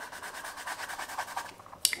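Coloured pencil scribbling on sketchbook paper over a layer of paint and pastel, a fast run of short scratchy strokes. It stops shortly before a single click near the end.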